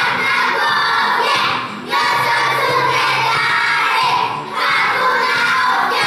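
A group of young children singing loudly together over instrumental accompaniment, in phrases of a couple of seconds with short breaks between them.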